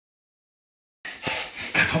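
Silence for about the first second, then sound cuts in suddenly: breathy huffing, and a man's voice beginning to speak near the end.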